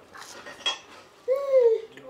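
Fork and knife clinking and scraping on a china dinner plate while a breaded veal schnitzel is eaten, with a sharp clink under a second in. The loudest sound is a short pitched tone that rises slightly and then falls, about halfway through.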